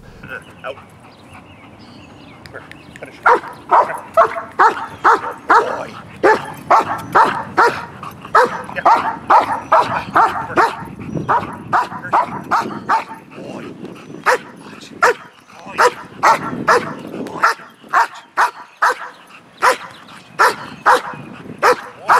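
A dog barking again and again, about two barks a second, from about three seconds in, in high drive for a ball held just out of its reach.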